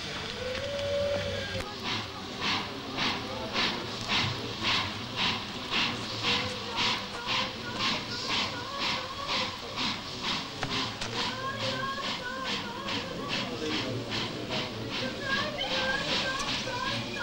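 Steam locomotive chuffing at a steady rate of about two puffs a second as it pulls out with the deportation train, starting about two seconds in. Wailing voices cry out over it, more strongly from about eleven seconds in.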